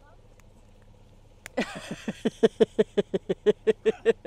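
A person laughing hard, a fast, even run of 'ha' bursts at about five or six a second, starting about a second and a half in just after a sharp click.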